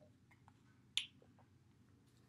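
A single sharp click about a second in, with a few fainter ticks around it, over faint room tone.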